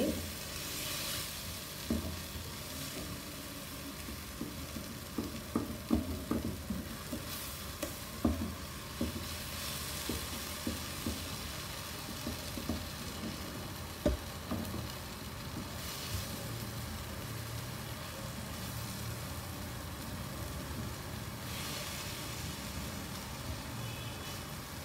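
Baingan bharta of mashed roasted eggplant and onion-tomato masala sizzling as it fries in a pan. A utensil mashes and stirs it, making scattered soft knocks and scrapes against the pan, mostly in the first half.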